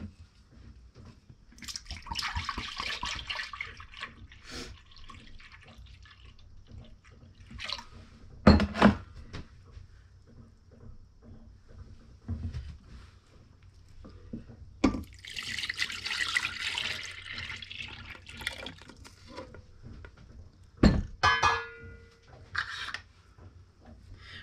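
Concord grape juice poured twice, each pour lasting two to three seconds: from a glass jug into a glass measuring cup, and into a pot of sugar. Sharp knocks of glass vessels set down on the counter come between the pours and after them.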